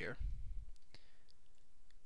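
A few faint, separate computer mouse clicks.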